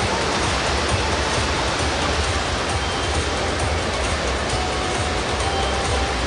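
Steady, even wash of noise in an indoor swimming pool hall during a butterfly race, with the swimmers' splashing, over a low rumble.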